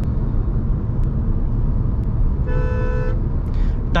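Steady road and engine noise inside the cabin of a moving Maruti Suzuki Vitara Brezza. A vehicle horn sounds once, about two and a half seconds in, for just over half a second.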